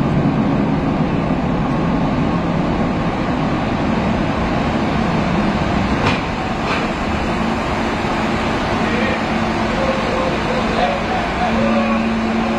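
Steady noise heard from inside a car cabin as the car rolls slowly across a ferry's steel vehicle deck. A faint steady hum comes in about halfway and grows stronger near the end.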